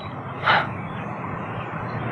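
Steady outdoor background noise, with one short breath-like sound about half a second in.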